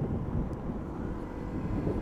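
Motorcycle riding along a road, heard from a rider-mounted camera: a steady low rumble of wind buffeting the microphone mixed with engine and road noise.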